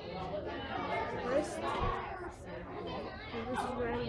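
Background chatter of many people talking at once, with no single voice standing out.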